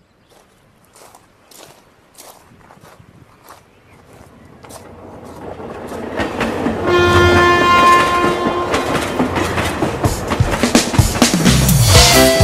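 Train sound effect opening a cumbia song: rhythmic clickety-clack of wheels on rails growing steadily louder as the train approaches. A horn blows about seven seconds in, and the band comes in near the end.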